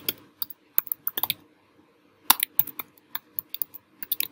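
Typing on a computer keyboard: a run of quick key clicks, with a pause of about a second midway before the clicking resumes.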